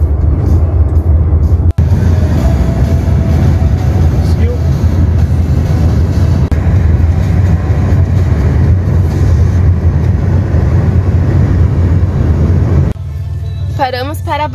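Steady low rumble of road and wind noise inside a car moving at road speed, broken by a brief gap about two seconds in. Near the end it falls to a quieter cabin hum.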